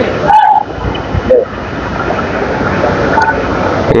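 General hubbub of a busy market: a steady wash of background noise with brief snatches of distant voices.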